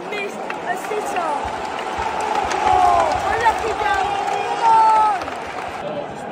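Football stadium crowd of home fans shouting and calling out together. It swells about two seconds in, and one voice is loudest shortly before the end.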